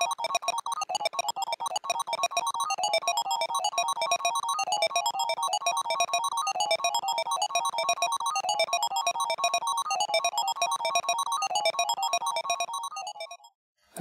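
Keyboard synth loop chopped up and replayed by a software audio slicer, a rapid, stuttering stream of short pitched note fragments in a rhythmic pattern. The slice pattern shifts as decay and step count are changed, and the playback fades out just before the end.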